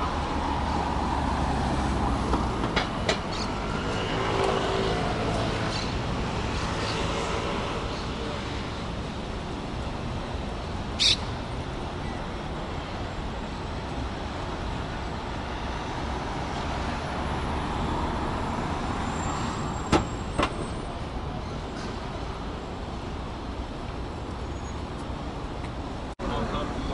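City street traffic at a crossing: cars and a scooter passing, with a steady rumble of road noise and engine hum that is strongest in the first few seconds. A brief sharp hiss cuts through a little before halfway, and a single click comes later.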